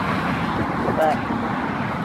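Wind blowing across a phone's microphone, a steady rushing noise, with road traffic running behind it.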